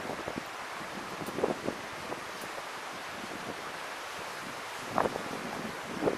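Steady rushing of wind on the microphone, an even noise with no voices, broken by a few faint short sounds about one and a half seconds and five seconds in.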